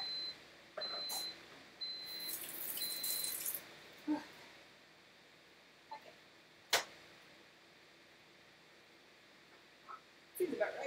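A kitchen appliance's electronic beeper sounds four short, high, steady beeps about once a second, with a brief hiss under the last two. A dull knock follows, and later a single sharp click.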